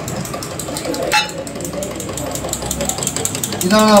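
A metal spoon stirring milky tea in a glass tumbler, clinking rapidly and steadily against the glass, with one sharper clink about a second in.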